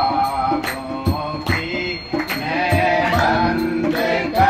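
A man singing a Hindi devotional bhajan, with hand claps keeping a steady beat of about two and a half a second, over steady held accompanying tones.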